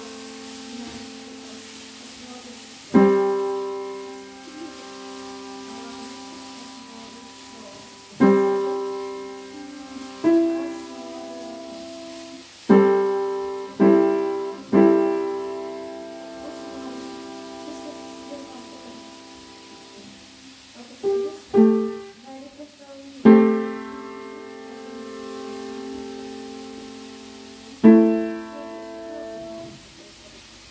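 Piano played slowly: sparse chords struck a few seconds apart, each left to ring and die away, with a quick group of three short notes about two-thirds of the way through.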